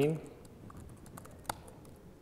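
Typing on a laptop keyboard: a run of light key clicks, with one sharper keystroke about one and a half seconds in.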